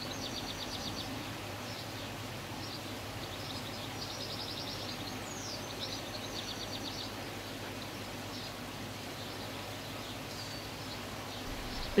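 A small songbird singing outdoors, repeating a short high phrase several times: a quick falling note followed by a fast, even trill, over a steady low hiss of background noise.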